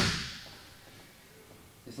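A sharp thud as a grappling partner is pulled forward and his hands slap down onto the foam mat, the sound ringing briefly in the room and fading within about half a second.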